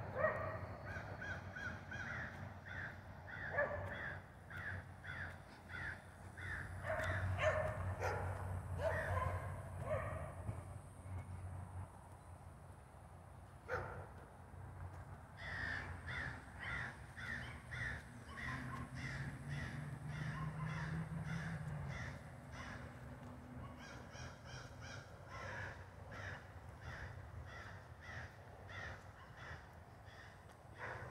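Crows cawing in runs of quick, repeated calls, several a second, with a short break about halfway through.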